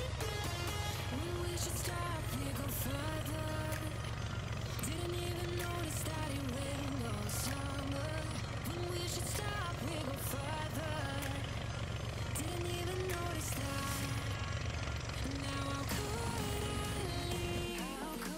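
Background music with a gliding melody over the steady low drone of a single-engine amphibious seaplane's propeller engine as it taxis on the water. The engine drone cuts off suddenly near the end while the music carries on.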